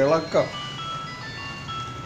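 A man's voice stops about half a second in. A high, tinkling electronic tune of short pure notes stepping up and down then plays, like a mobile-phone ringtone or a chime melody.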